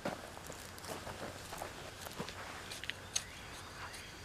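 Quiet, irregular scuffs and clicks of footsteps and a hand trowel working loose tilled garden soil, with a sharper tick right at the start and another a little past three seconds in.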